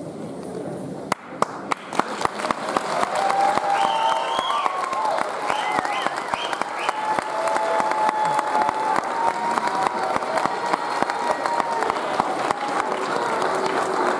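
An audience in a hall breaks into applause about a second in and keeps clapping steadily. A few calls and brief whistles ride over it.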